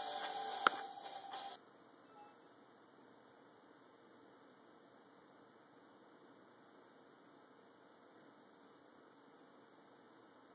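A single sharp click of a MacBook trackpad button, pressing Shut down, over a steady hum of several pitches. The hum cuts off suddenly about a second and a half in, leaving near silence with faint hiss.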